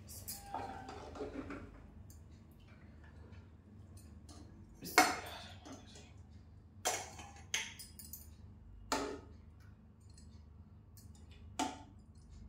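A steel ladle clinking against aluminium cooking pots as curry is scooped from a large pot into a small one. The clinks come one at a time, about five, the loudest about five seconds in.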